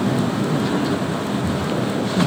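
Steady rushing background noise in a meeting room, even and unchanging, with no speech.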